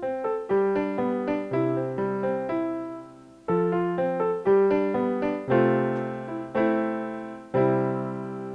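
Logic Pro X's Yamaha Grand Piano software instrument playing back a simple recorded melody as it was played, before any quantizing. The notes come in short phrases with a brief pause about three and a half seconds in.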